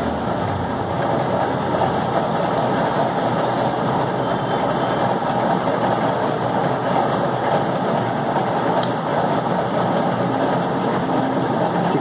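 A steady, even mechanical noise, like a motor running, that does not change.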